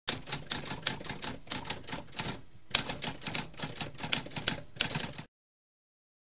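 Typewriter typing: a fast run of keystrokes with a brief pause about halfway, stopping suddenly a little after five seconds in.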